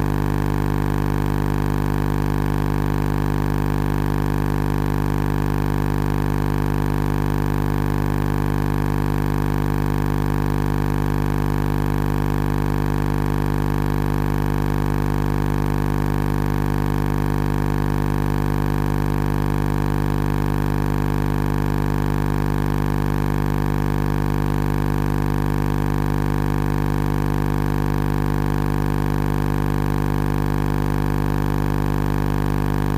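A loud, steady hum made of many tones, strongest low down, that does not change at all throughout. It has none of the rise, fall and breaks of voices chanting.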